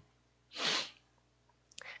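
One short, sharp breath through the nose or mouth from a man at a close microphone, about half a second in, followed by a faint mouth click just before he speaks again.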